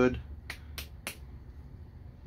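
Three short, sharp clicks, about a third of a second apart.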